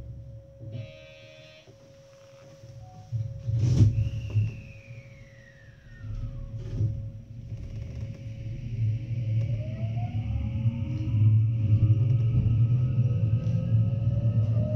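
Electric multiple unit's traction inverter whining as the train pulls away from a station stop: several tones rise steadily in pitch over a low running rumble. A sharp click and a falling tone come earlier.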